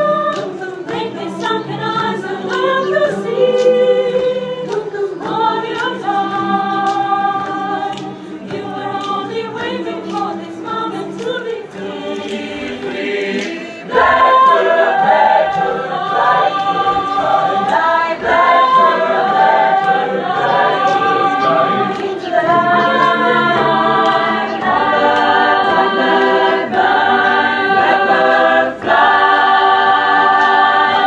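Mixed choir of women's and men's voices singing a cappella in several parts, holding chords. It grows markedly louder about fourteen seconds in.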